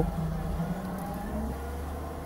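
A low, steady background rumble with no speech, such as room hum or distant traffic.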